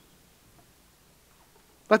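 Near silence: faint room tone, with a man's voice starting right at the end.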